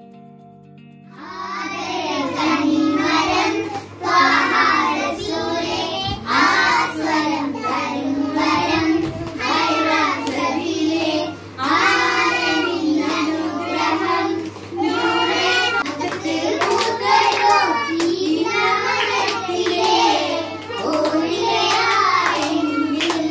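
A group of young girls singing a song together and clapping their hands along with it. The singing and clapping start about a second in, after faint background music.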